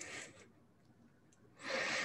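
A person's breathing: a short soft breath at the start, then a longer exhale about a second and a half in.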